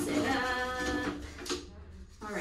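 A voice singing a brief phrase of a couple of held notes, lasting under a second.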